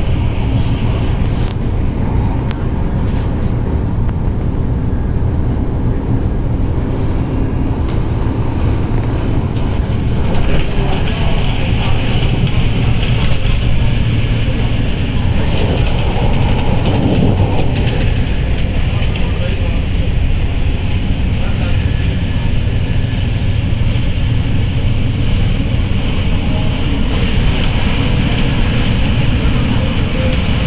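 Hong Kong MTR train heard from inside the carriage while running at speed: a steady low rumble of wheels on track, with a higher hiss getting stronger about ten seconds in.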